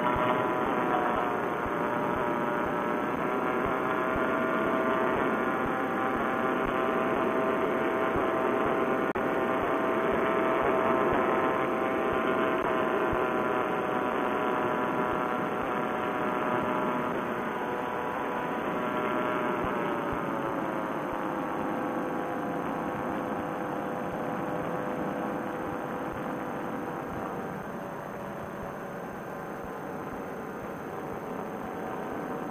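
Vittorazi Moster two-stroke paramotor engine and propeller droning steadily in flight. The pitch rises slightly in the first second, then slides down about twenty seconds in as the throttle is eased back, and the sound gets a little quieter near the end.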